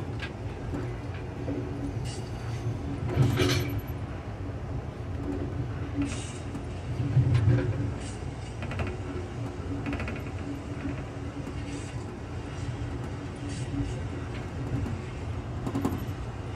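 Amtrak passenger train running along the track, heard from inside its rear car: a steady low rumble with faint steady tones. Scattered clicks and knocks come through it, the loudest about three seconds in, and the rumble swells about seven seconds in.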